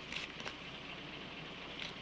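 Papers being handled: a few brief soft rustles in the first half-second and again near the end, over a steady low hiss.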